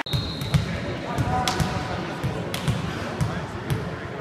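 Volleyball being bounced on the indoor court floor before a serve: a steady run of dull thumps, about two a second. Faint voices in the hall lie under it.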